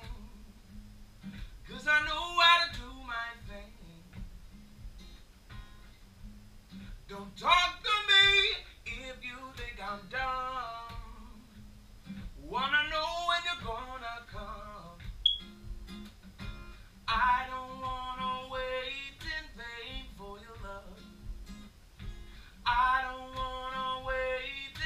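A solo acoustic guitar is strummed and picked steadily, and a man's voice comes in every few seconds with short wordless sung phrases. There are no lyrics.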